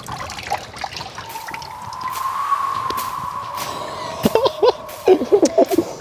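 Water dripping and trickling back into plastic tubs as hydro-dipped sneakers are lifted out, with a few small splashy clicks. A steady held tone runs through the middle and is the loudest sound.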